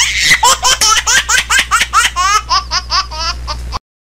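High-pitched laughter: a rapid run of 'ha' bursts, about five a second, that cuts off suddenly just before the end.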